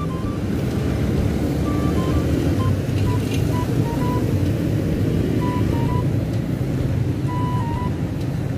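Steady rumble of street traffic. A faint simple tune of short single notes plays over it.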